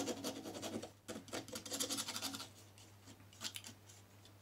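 Palette knife scraping thick dark oil paint onto a painting board, a gritty scratching in quick short strokes that thins out to faint scratches in the second half.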